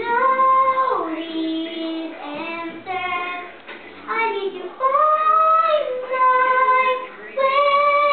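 A young girl singing solo and unaccompanied, holding long notes that slide up and down between pitches.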